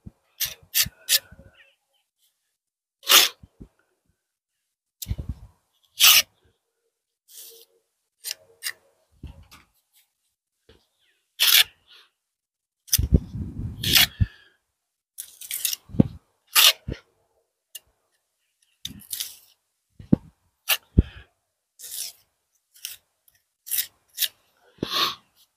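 Steel pointing trowel scraping cement mortar off a hawk and pressing it into the joints of brickwork: short, irregular scrapes a second or two apart. About 13 seconds in, a longer low rustle of handling or wind joins in.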